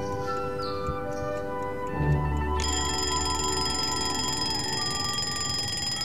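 Background music with long held notes; about two and a half seconds in, an alarm clock starts ringing, a steady high ring that carries on over the music.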